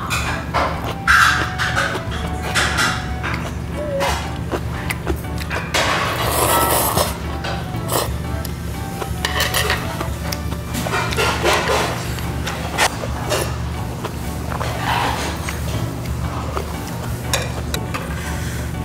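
Background music with a steady low beat, over close-miked eating sounds: short clicks of chopsticks and a ladle against bowls, and a slurp about six seconds in.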